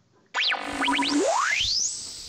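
Electronic transition sound effect: after a brief silence, a few quick chirps, then a long tone that glides smoothly upward from low to very high pitch over about a second and ends in a thin high whistle.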